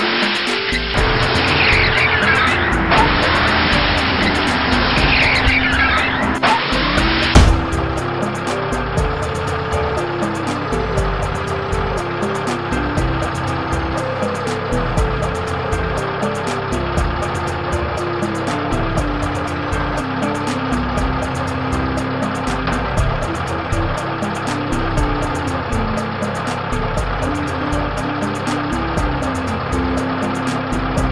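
Car tyres screeching in a long skid, ending in one loud crash about seven seconds in. Background music plays throughout and carries on alone after the crash.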